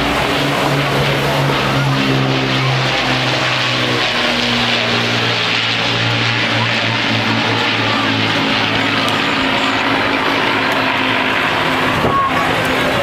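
Avro Lancaster bomber's four Rolls-Royce Merlin piston engines and propellers, a loud steady drone as it flies past and banks overhead, its pitch dropping a little partway through as it passes and moves away.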